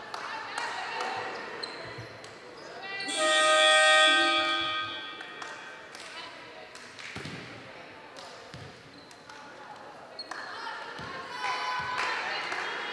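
A ball thudding a few times on the wooden floor of a large sports hall, among voices, with a loud steady horn-like tone lasting about two seconds, a few seconds in.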